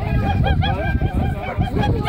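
Excited dogs barking in quick, high-pitched yips, several a second, over a low rumble.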